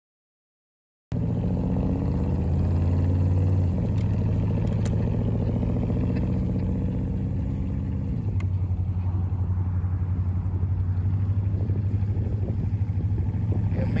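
A vehicle engine running steadily, with road and wind noise, heard from the seat of a boat towed on a trailer. It starts about a second in, and its tone shifts in steps twice, like gear changes.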